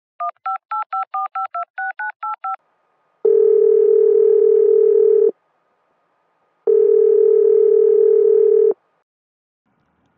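Touch-tone telephone dialing: about ten quick two-tone key beeps in a row, then a ringing tone sounding twice for about two seconds each, a call being placed and ringing at the other end.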